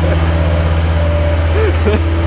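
An engine idling: a loud, even low hum, with a short laugh near the end.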